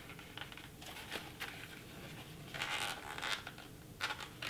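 Handling of a Dye i5 paintball goggle's plastic parts as someone tries to pull a part out: quiet rubbing and a few small clicks, then a short rasping rub near three seconds in.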